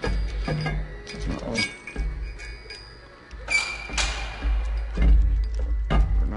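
Metal clinks and knocks as a camshaft, hung from a hoist chain, is turned by hand and worked into its bearing bores, with one louder ringing clank a little past the middle. Music plays in the background throughout.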